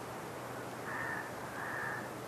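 Two short bird calls in the background, the first about a second in and the second just before the end, over a steady recording hiss.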